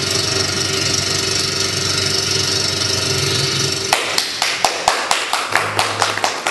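A loud steady whirring noise cuts off suddenly about four seconds in, and a small audience starts clapping, sharp separate claps about three or four a second.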